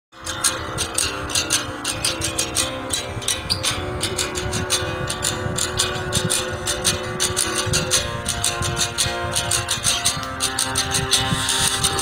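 Background music: the instrumental intro of a song, with a steady percussive beat over sustained notes.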